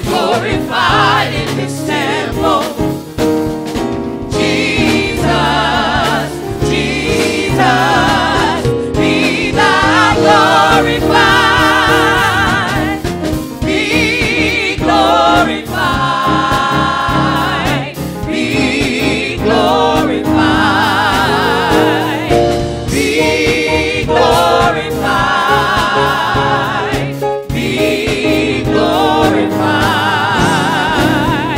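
Gospel praise team of several voices singing together in harmony through microphones, over sustained instrumental chords, with wavering vibrato on the held notes.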